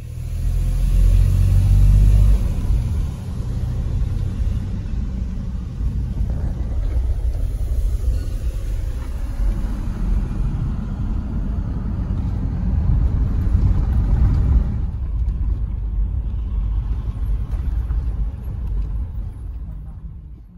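A moving car heard from inside its cabin: a loud, steady low rumble of engine and road noise, strongest in the first few seconds and easing slightly near the end.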